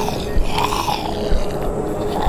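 Background music from the edit: a steady held tone with a low beat about once a second and a faint swelling sound over it.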